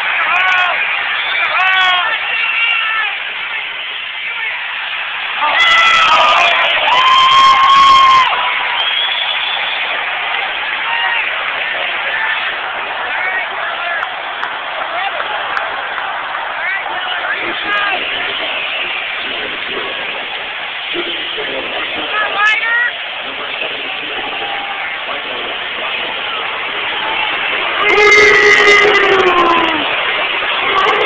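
Hockey arena crowd noise: many voices talking and shouting at once, with loud sustained yells about six seconds in and again near the end.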